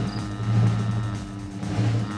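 Game-show background music with a steady low bass and sustained held tones, playing under a timed round.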